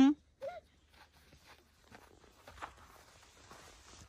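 Faint, irregular crunching of footsteps in snow, with a brief voice sound about half a second in.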